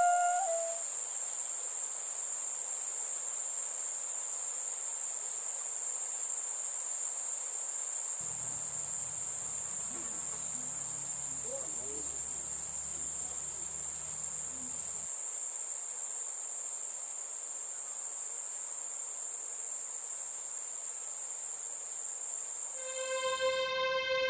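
Crickets trilling at one steady high pitch without a break. A faint low sound comes in for a few seconds in the middle.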